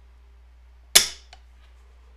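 The hammer of an empty AR-15's mil-spec trigger group snapping forward once as the trigger breaks under a trigger pull gauge (a dry fire). A faint second click follows a moment later.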